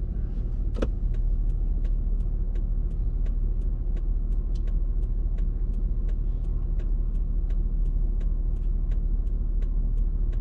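Car idling while stopped, heard from inside the cabin as a steady low rumble. A click comes about a second in, and after it a light, regular ticking about three times a second.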